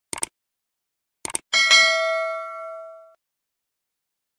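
Subscribe-button sound effects: a quick double click, a few more clicks about a second later, then a single bell ding that rings for about a second and a half and fades away.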